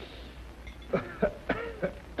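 A man coughing about four times in quick succession, starting about a second in.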